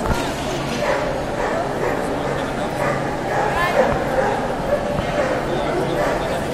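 Many voices chattering in a large, echoing exhibition hall, with dogs barking and yipping among them.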